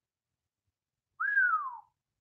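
A single short whistle-like note about a second in, rising briefly and then gliding down in pitch.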